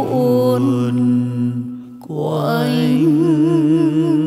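Male and female voices in a Vietnamese bolero duet, holding long sung notes with vibrato over the backing music. The singing dips briefly just before the middle, then a new long note is held.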